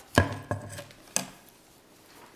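Sheets of paper handled and shuffled at a lectern close to the microphone: three sharp knocks and rustles, the first near the start and the loudest, another about half a second in, and a third just after a second.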